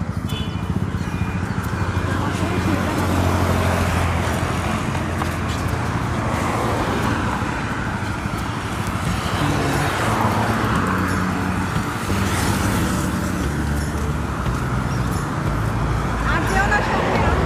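Road traffic: a steady low hum of car and van engines with tyre noise as vehicles pass.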